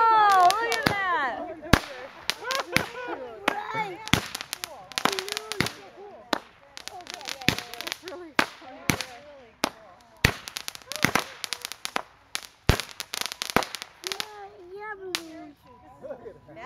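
Daytime aerial fireworks firing a rapid, irregular string of bangs and pops, loudest at the start and thinning out toward the end.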